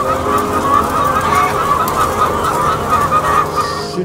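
Many caged laying hens in a battery-cage hen house calling at once, a continuous din of overlapping calls, over a steady low hum.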